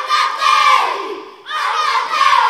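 A group of children in a kapa haka team shouting a chant in unison: two loud shouted phrases, the second starting about one and a half seconds in, each falling in pitch.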